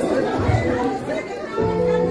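Audience chatter: many people talking and calling out at once in a large hall. A held musical chord comes in about one and a half seconds in.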